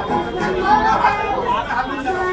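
Several voices chattering over one another.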